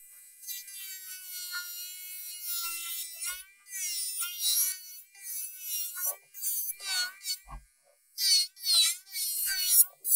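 Electric nail drill with a titanium bit running at high speed against a gel nail, filing it down. It makes a high whine whose pitch dips and wavers as the bit is pressed on and lifted, and it cuts out briefly twice.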